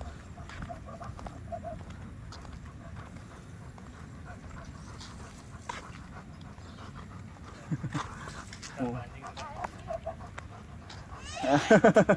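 An Alaskan Malamute whining: a few short cries about eight seconds in, then a louder run of rising and falling cries near the end.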